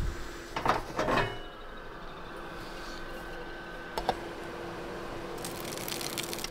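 Cookware being handled on a two-burner camping gas stove: a few short sounds about a second in, a single click about four seconds in and a clatter near the end, over a faint steady hum.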